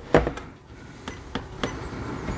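A few sharp clicks of buttons being pressed on the keypad of an SG-003A signal generator, stepping its output current up: one soon after the start and two close together past the middle.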